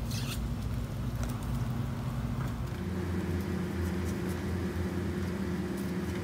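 A steady low motor hum that shifts to a slightly different pitch a little under halfway through, with a few faint clicks from hands pulling apart sticky jackfruit.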